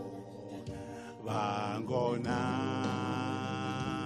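A man singing live over hollow-body electric guitar. The guitar plays alone for about a second, then the voice comes in with a sliding phrase and settles into one long held note.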